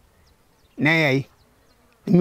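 A man's voice: a single drawn-out syllable about a second in, between short pauses in speech in Maa.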